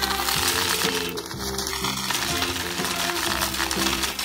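Instrumental music with a steady run of held notes, over small candy-coated chocolates rattling and clicking as they tumble and spill from a tray.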